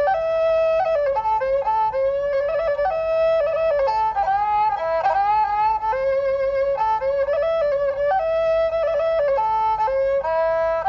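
Background music: a single melody instrument plays a slow traditional-sounding tune in held notes that step up and down, some with a wavering vibrato.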